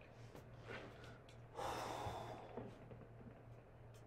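A person breathing out audibly once, a soft breathy swell a little after one and a half seconds in, lasting under a second. Otherwise faint room noise with a low steady hum.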